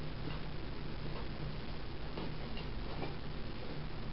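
Faint, irregular clicks and ticks of a hand tool prying at the snap-on plastic lid of a small terrarium, over a steady low hum and hiss.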